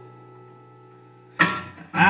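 Acoustic guitar and steel guitar playing live: a held chord rings and fades quietly, then about one and a half seconds in a loud strummed chord comes in and is struck again at the end.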